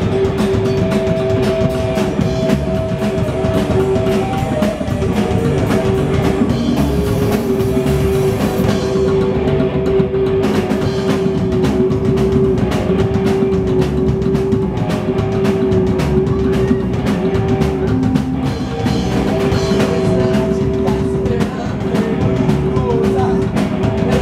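Live psychobilly band playing an instrumental passage with no vocals: slapped upright bass, electric guitar and drum kit, loud and dense. A long held guitar note rings over a fast drum beat, with a cymbal crash about seven seconds in.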